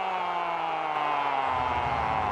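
A Spanish-language TV football commentator's long drawn-out goal cry, one held note slowly falling in pitch, celebrating a Real Madrid goal. A low rumble of crowd noise comes in underneath about one and a half seconds in.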